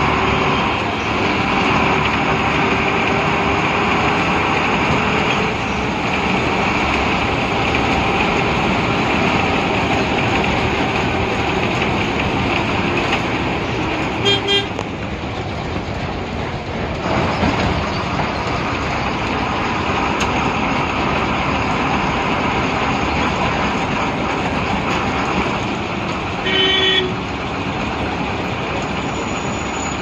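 Steady engine and road noise inside the cabin of a moving MSRTC Ashok Leyland ordinary bus, with two short horn honks, one about halfway through and one near the end.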